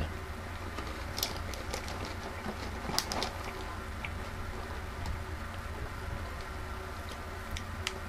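Faint, irregular crunching clicks of dry cream-filled cinnamon cereal being chewed with the mouth closed, over a steady low hum.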